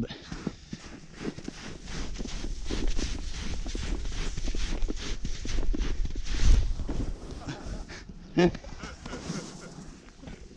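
Snow crunching and scraping under a hiker descending a steep snowfield, with a low rumble of wind on the microphone that swells in the middle. A short spoken word comes near the end.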